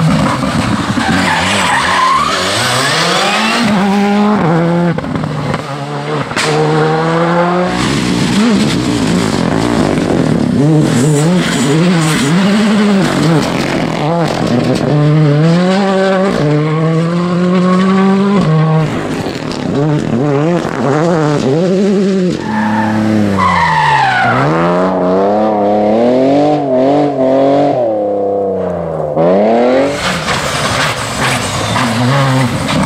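Rally2-class rally cars with turbocharged four-cylinder engines running hard past the camera, one after another. The engine note climbs and drops sharply through gear changes and lifts. There is loose-surface tyre noise and gravel spray as they slide through.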